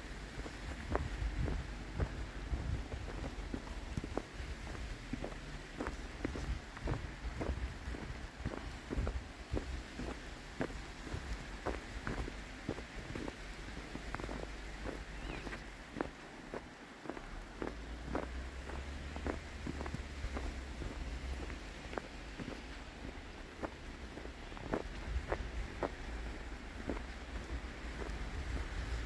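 Footsteps in deep fresh snow at a steady walking pace, about two steps a second.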